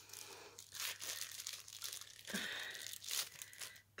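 Faint crinkling and rustling of clear plastic packaging being handled, in a few short bursts.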